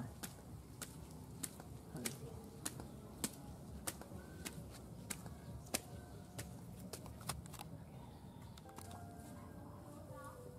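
Faint footsteps climbing stone steps, a light click about every 0.6 seconds, stopping about eight seconds in.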